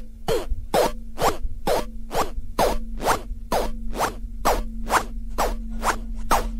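Electronic dance music from a DJ set: a sharp hit that falls in pitch repeats evenly a little over twice a second over a steady low drone.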